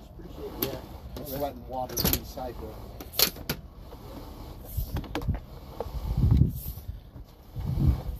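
Sewer inspection camera's push cable being pulled back out of the line: a few sharp clicks and knocks with low rumbling handling noise.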